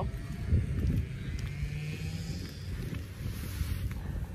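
Wind rumbling on the phone's microphone, over the steady drone of lawn mowers running in the distance.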